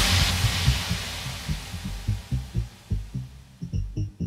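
Tech house DJ mix at a breakdown: a wash of noise fades away over the first couple of seconds, leaving a pulsing low bass rhythm. Near the end a high, repeating synth note comes in.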